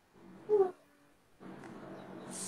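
A short, high-pitched call that falls in pitch about half a second in, followed from about a second and a half in by a steady low hum.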